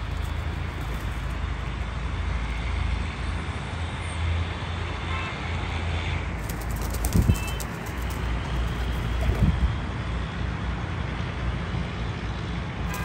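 Steady low outdoor rumble with a couple of brief low thumps, about seven and nine and a half seconds in.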